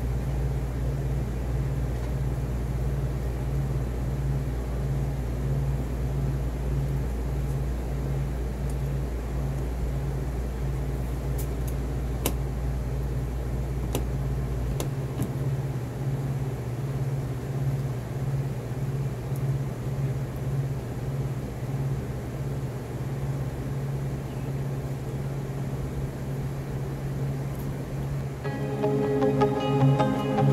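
A steady low hum with a slow, even pulse about once a second; its deepest rumble stops about fifteen seconds in.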